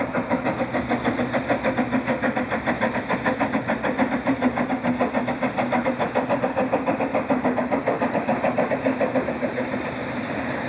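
Narrow-gauge steam locomotive working, a rapid, even beat of about six pulses a second over a steady low hum.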